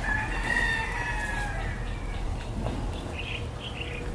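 A rooster crowing once in a long call of about two seconds, falling slightly in pitch at the end, followed by a few short, high calls near the end.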